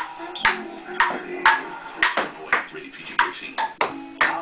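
Table tennis rally: the ping pong ball clicking off the paddles and the table about twice a second.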